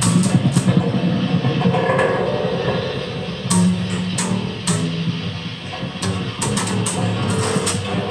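Free-improvised industrial noise music: guitar playing over a dense, steady low drone, with sharp high clicks and crackles scattered through it, thickest in the second half.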